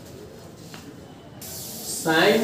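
Quiet room noise with a faint click, then a steady hiss from the microphone that switches on suddenly about one and a half seconds in.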